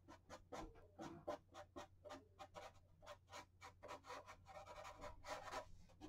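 Faint scratching of a felt-tip marker on paper as quick, short hair strokes are drawn, several strokes a second.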